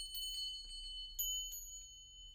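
A high, bell-like chime sound effect ringing and fading away, with a second chime struck about a second in.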